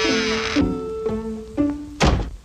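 Orchestral cartoon score on strings: a held note under a shimmer of high strings that breaks off about half a second in, then lower string notes stepping down with a couple of short plucked accents.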